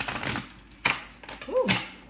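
A deck of tarot cards being shuffled by hand: a rapid patter of cards sliding and slapping together for the first half second, then a single sharp snap of the cards about a second in. A woman's short 'Ooh' comes near the end.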